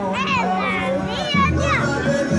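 Children's excited voices and chatter over music; a deep bass line comes into the music about a second and a half in.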